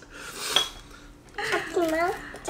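Tableware clinking: chopsticks against a ceramic dish give a brief, light ringing clink about half a second in.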